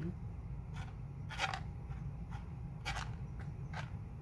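Black plastic gold pan being swirled and shaken with water and paydirt in it: three brief swishes and scrapes of water and fine material moving across the pan, over a low steady hum.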